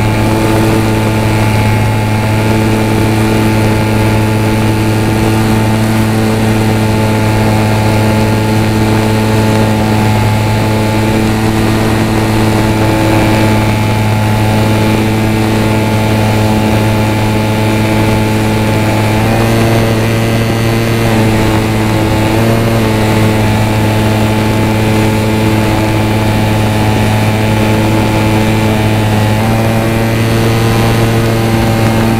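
HobbyZone Champ micro RC plane's electric motor and propeller running in flight, heard from a camera mounted on the plane as a loud, steady hum. Its pitch shifts a little about twenty seconds in.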